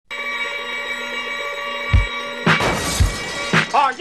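An alarm clock ringing with a steady tone, with a thump about two seconds in. The ringing cuts off suddenly at about two and a half seconds as music with a beat starts, and a voice comes in near the end.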